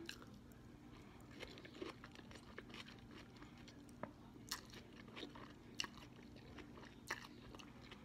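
Faint chewing and mouth sounds of someone eating instant ramen noodles: a scatter of small wet clicks, a few of them louder near the middle and later on.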